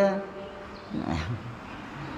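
A man's speaking voice trails off, then a brief low vocal sound comes about a second in, over faint room noise.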